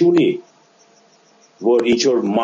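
A man speaking over a video call. After the first half-second the speech breaks off for about a second, leaving only a faint steady hum, and then resumes.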